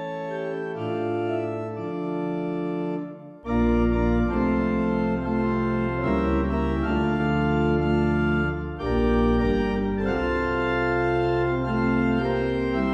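Church organ playing sustained chords of a hymn tune. About three and a half seconds in, a deep pedal bass joins and it gets louder, with a brief break between chords just before the ninth second.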